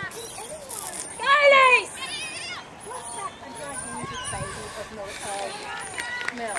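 People shouting during a football match: one loud, drawn-out call about a second in, then shorter, quieter voices. Short high chirps repeat in the background throughout.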